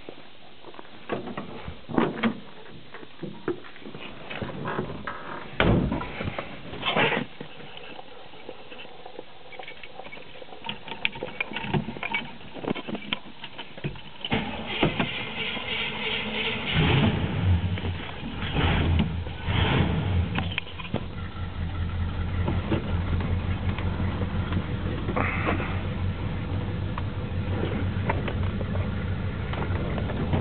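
Scattered knocks and clicks, then a 1971 Buick Skylark's engine being cranked and starting a little past halfway. It then idles steadily with a low, even hum, heard from the driver's seat.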